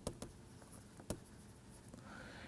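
Stylus tapping and scratching on a pen tablet while handwriting words: a few faint, sharp clicks, two near the start and one about a second in.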